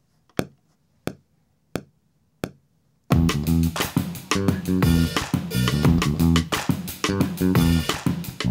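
Four evenly spaced clicks, a little under a second apart, like a count-in, then a programmed beat played back from an Akai MPC Renaissance starting about three seconds in: drums with a heavy sampled bassline.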